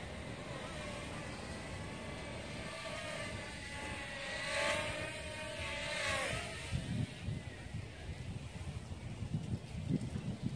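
XinXun Sky Devil micro drone's motors and propellers whining in flight. The pitch wavers and bends as the throttle changes, and the sound swells loudest about halfway through as the drone flies close. Low rumbling covers it over the last few seconds.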